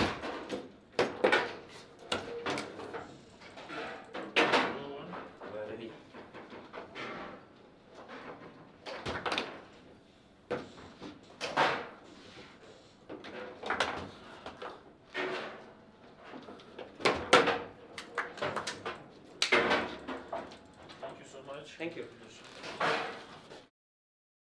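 Foosball table in play: irregular sharp knocks and bangs as the ball is struck by the rod figures and hits the table walls, with rods banging against their stops. During the rally a goal is scored.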